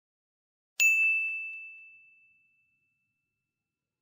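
A single bell-like ding about a second in: one clear ringing tone that fades away over about two seconds, with dead silence around it.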